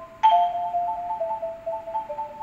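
Marimba played with yarn mallets: rolled two-note chords, the rapid repeated strokes sustaining each pair of notes. A new chord comes in about a quarter second in, and the lower note steps down about a second later.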